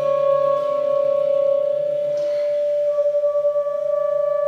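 Tenor saxophone holding one long, steady note, layered with a low electronic drone underneath. A brief breathy puff comes about two seconds in, and the note starts to waver in a pulsing way near the end.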